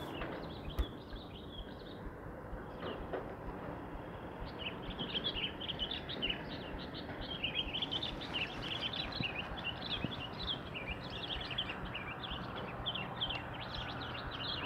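Birds chirping: many short, quick chirps that grow busy about four seconds in, over a steady low background hum.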